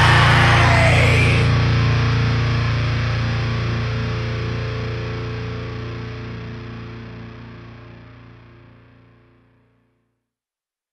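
The final chord of a heavy metalcore song, distorted electric guitars and bass left ringing after the last hit. It fades steadily, the high end dying first, until it is gone about nine seconds in.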